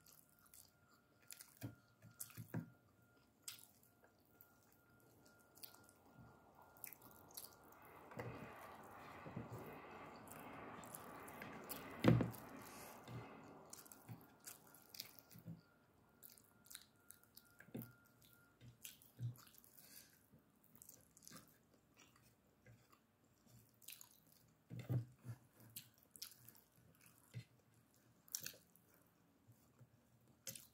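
A person chewing a mouthful of rice and fried fish eaten by hand, with many small wet mouth clicks and smacks. A hiss swells in the middle, and a single sharp knock about twelve seconds in is the loudest sound.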